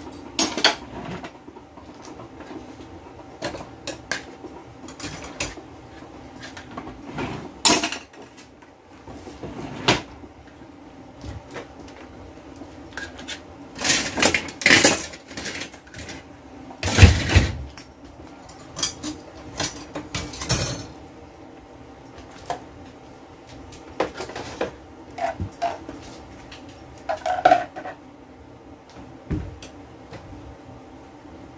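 Dishes and utensils clinking and clattering as they are handled and set down at a kitchen sink, in scattered knocks with a heavier thump about halfway through. A faint steady hum runs underneath.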